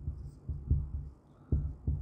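Marker pen writing on a whiteboard: about five soft, low knocks at uneven spacing as the pen strikes and strokes the board.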